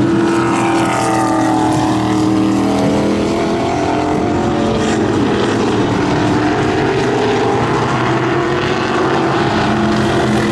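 Several vintage modified race cars' engines running on a short oval track, a loud continuous drone of overlapping engines. One engine's pitch falls over the first couple of seconds.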